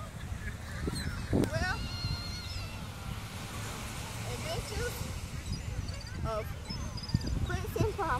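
A steady low rumble of wind on the microphone and surf, with distant voices and a few short, high-pitched calls about two seconds in.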